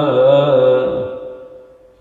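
A man's voice chanting an Arabic supplication holds the drawn-out last note of a phrase. The note fades away over about a second and a half, leaving a short pause.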